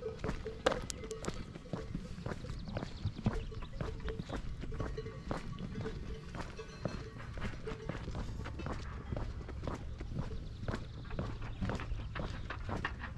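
Footsteps of someone walking on a paved lane, a steady run of light steps. A faint ringing tone comes and goes through the first two-thirds, then stops.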